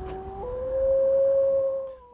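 Gray wolf howling: one long call that jumps up in pitch about half a second in and then holds steady.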